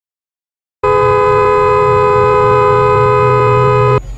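Car horn held down in one long steady blast of about three seconds, starting about a second in and cut off abruptly at the end.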